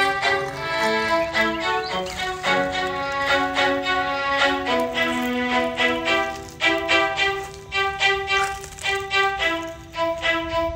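Background music: a violin playing a melody of held notes, the pitch changing every second or so.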